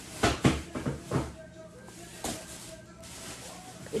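Groceries being handled: a few short knocks and rustles of packaging, the loudest within the first second and a half and one more a little past the middle.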